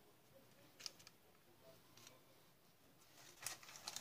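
Near silence with a few faint soft clicks and rustles from a pastry brush dabbing sauce onto whole sea bass on parchment paper, the clearest just under a second in.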